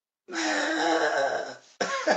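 A man's drawn-out vocal groan lasting over a second, breaking off into rapid bursts of laughter near the end.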